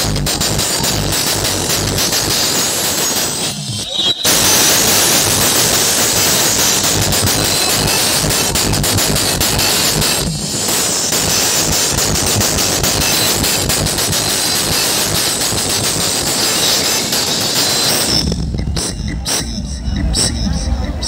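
Loud electronic DJ music from a truck-mounted speaker stack, mixed with the noise of a dense crowd. There is a brief break about four seconds in, and heavy bass comes back near the end.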